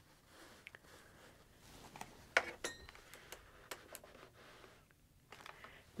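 Quiet handling of quilting fabric pieces on a sewing-machine table: faint rustles and light taps, with one sharper metallic clink a little over two seconds in.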